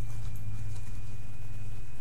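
Tarot cards being shuffled by hand, with a few faint irregular clicks of card against card. Beneath them runs a steady low hum with a thin, steady high tone.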